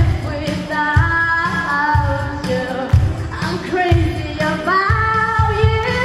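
A woman singing into a handheld microphone over musical accompaniment with a steady beat, holding long notes.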